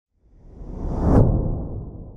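A whoosh transition sound effect swells up, peaks about a second in with a bright hiss, and then fades away.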